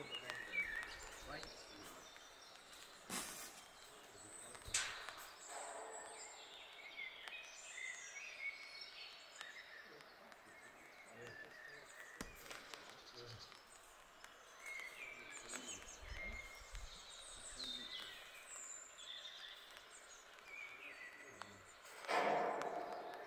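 Birds singing faintly in the trees, many short chirps and trills from several birds, with a couple of sharp clicks about three and five seconds in.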